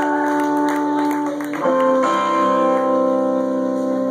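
Live band's electric guitars and bass playing long, sustained chords that ring steadily, changing chord twice in the middle.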